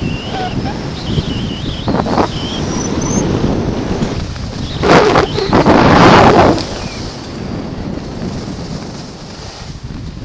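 Wind buffeting a body-worn action camera's microphone during a fast ski descent, with skis hissing over soft snow. A louder rush of noise comes between about five and seven seconds in, as the skier leans into a turn.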